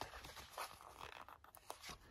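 Faint rustle of a paper sticker sheet being handled, with a few small clicks and crackles as a little sticker is peeled off its backing with tweezers.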